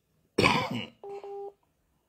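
A man coughs once into his fist, then a short steady electronic beep follows about a second in.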